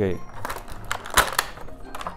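Hard plastic pieces of a small model spaceship and its stand clicking and knocking as they are handled and fitted together, a few sharp clicks with the strongest a little after the middle.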